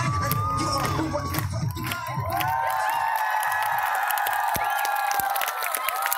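Hip-hop dance music cuts off about two seconds in, and a crowd of children cheers and shouts, with many long, high, overlapping yells.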